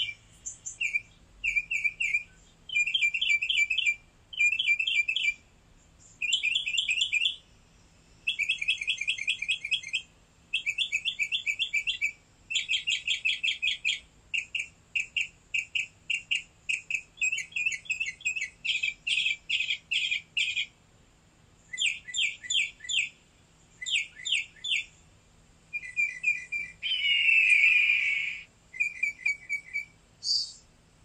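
A bird chirping in rapid trills: short bursts of fast, high chirps, each about a second long, repeated with brief gaps throughout. Near the end comes one louder, lower call.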